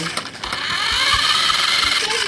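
Small electric motor of a toy remote-control car whining as it drives across a hard floor, its pitch gliding up and down with speed.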